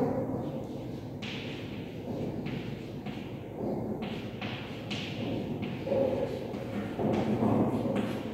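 Chalk tapping and scratching on a blackboard as a line of words is written, a string of short, light taps about a second apart.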